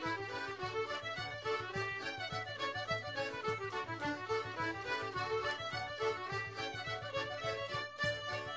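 Background music: an instrumental tune with a melodic lead over a steady beat.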